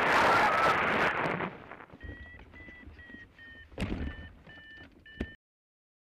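Loud wind rush over the microphone of a camera on a hang glider's wing, close to the ground, fading after about a second and a half. Then a steady run of short electronic beeps, about two or three a second, with two thumps, one near the middle and a sharper one near the end, before the sound cuts off.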